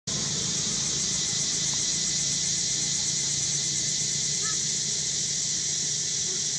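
Steady high-pitched insect chorus with a faint even pulsing, over a low steady hum. A short faint chirp comes about halfway through.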